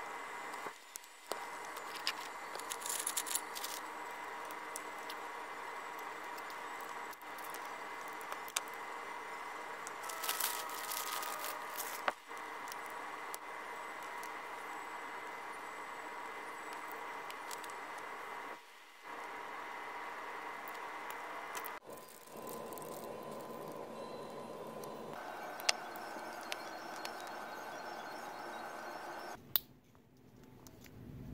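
Steady electrical hum with a few light clicks and rustles from small tools and parts being handled on a workbench. The hum breaks off and changes abruptly several times.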